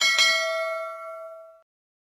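Bell sound effect for a notification-bell animation: a small bell struck twice in quick succession, then ringing out and fading over about a second and a half.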